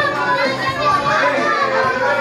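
A crowd of children shouting and chattering all at once, with music playing underneath.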